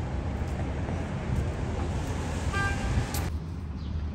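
City street traffic noise: a steady rumble and hiss of cars, with a brief car horn toot about two and a half seconds in. The traffic hiss drops away abruptly a little after three seconds.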